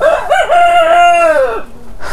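Rooster crowing once: a single call of about a second and a half that rises, holds and falls away at the end.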